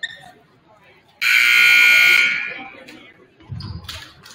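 Gym scoreboard horn sounding one loud, steady buzz of about a second, then dying away in the hall's echo.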